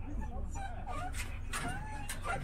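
Golden retriever whining in short whimpers that rise and fall in pitch, over a steady low rumble.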